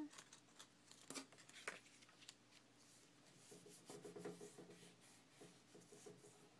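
Near silence with faint rustles and a few light ticks of origami paper being pressed and folded by hand as the glued flap of a small seed envelope is stuck down.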